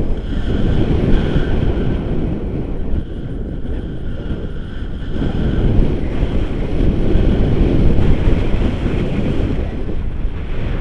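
Airflow of a paraglider in flight buffeting a pole-mounted camera's microphone: a loud, gusty rumble of wind noise that swells and eases.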